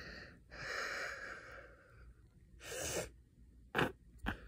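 A person breathing close to the microphone. There is a long noisy breath about half a second in, a shorter one near three seconds, and a sharp, brief sniff-like burst just before the end.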